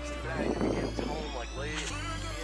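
A quiet lull: faint voices in the background over a steady low hum, with a thin high tone slowly rising in pitch throughout.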